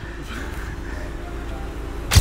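Steady low rumble of a car engine idling.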